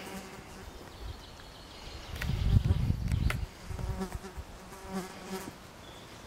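An insect buzzing close by, a faint steady low hum that holds its pitch and fades out shortly before the end. A louder low rumble on the microphone about two to three seconds in, with a couple of faint clicks.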